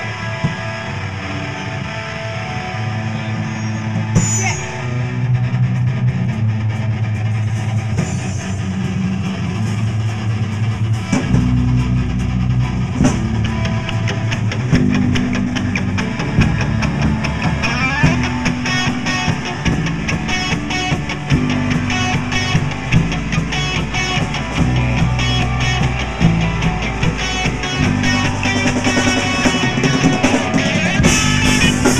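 Live rock band playing an instrumental intro on electric guitars, bass and drum kit, with no vocals yet. The low end thickens about eleven seconds in as the full band comes in harder.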